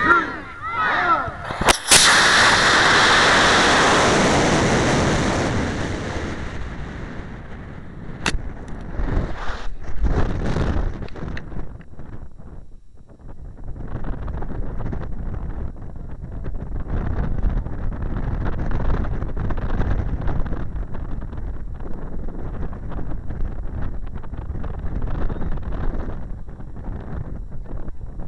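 An Aerotech G64-4W model rocket motor ignites with a sharp crack about two seconds in and burns with a loud rushing noise that fades over a few seconds as the rocket climbs. About eight seconds in a single sharp pop comes as the ejection charge fires after the motor's 4-second delay. After that, wind rushes over the onboard microphone as the rocket comes down.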